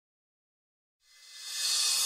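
Silence, then about a second in a hissing noise swell fades in and rises: the lead-in to the opening of a rock song.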